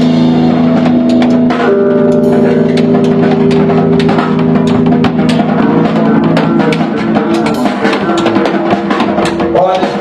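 Live rock band playing loud: electric guitar holding long sustained notes over a drum kit, with a run of drum and cymbal hits from about two seconds in.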